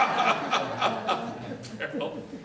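People chuckling and laughing in short rhythmic bursts, a few a second, dying away after about a second.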